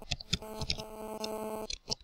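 Computer keyboard keys clicking as a few letters are typed, over a steady electrical hum made of several tones.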